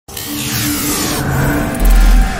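Cinematic logo-intro sound design: a whooshing sweep that falls in pitch over steady low synth tones, then a deep bass impact hits near the end.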